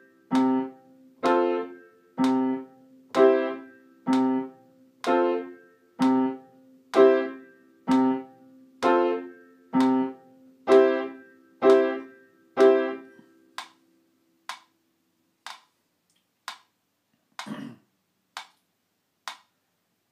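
Piano playing the same middle-register chord over and over, one short struck chord about every second, about fourteen times, stopping about 13 seconds in. After that, only faint short clicks keep the same beat.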